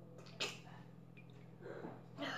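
Faint steady low hum, with one short sharp breath sound from a person drinking from a mug about half a second in and a softer breath near the end.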